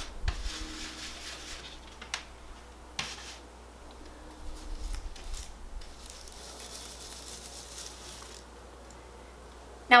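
Stencil brush swirled in circles over a stencil on a textured wall: faint, scratchy rubbing that comes and goes, with a couple of light taps about two and three seconds in.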